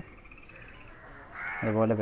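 Birds calling outdoors: crows cawing, with a faint high twittering trill and a short whistled note about a second in.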